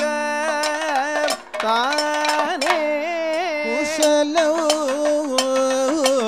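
Kathakali padam: a male voice singing an ornamented, gliding melody, accompanied by maddalam drum and sharp percussion strikes, with a brief break in the sound about a second and a half in.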